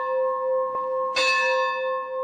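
A bell ringing with a long, steady hum, struck again a little over a second in.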